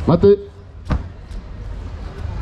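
A short called command, 'Mate' (stop), then about a second in a single sharp thud of a judoka hitting the foam judo mat.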